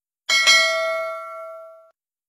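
Notification-bell 'ding' sound effect for a subscribe-and-like animation: a bell struck twice in quick succession, its ringing fading away over about a second and a half.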